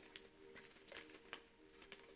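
Near silence, with a few faint, soft clicks of a tarot deck being handled in the hands over a faint steady hum.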